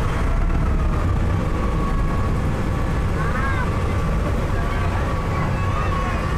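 A car ferry's engine running steadily under way, a loud low rumble with a thin steady whine above it, and passengers' voices in the background.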